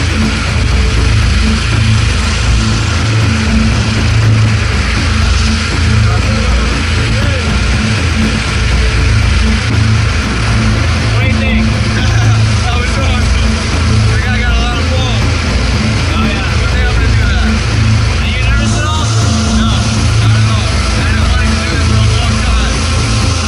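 Steady, loud drone of a small propeller plane's engine heard from inside the cabin, with rushing air noise over it. Voices shout over the drone partway through.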